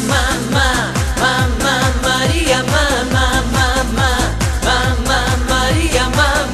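Portuguese dance-pop song: a repeating, wavering melodic hook over a steady dance beat with a deep kick drum.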